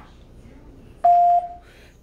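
A 2GIG alarm panel gives one short, steady beep about a second in: an exit-delay beep after the system has been armed to away.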